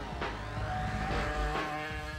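Background music mixed with a racing motorcycle's engine going past at high revs, its pitch falling just at the start.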